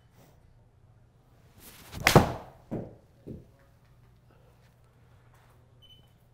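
A seven-iron strikes a Callaway Chrome Soft X LS golf ball with one sharp crack about two seconds in, just after a short swish of the swing, followed by two softer thuds.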